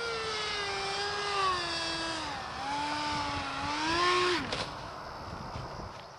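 Electric ducted-fan unit of an RC X-31 park jet whining as the throttle changes: the pitch sags about two seconds in, climbs again, then falls away sharply about four and a half seconds in, with a couple of sharp clicks as it cuts out.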